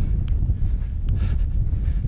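Wind buffeting the camera microphone: a loud, steady low rumble, with two faint ticks in the middle.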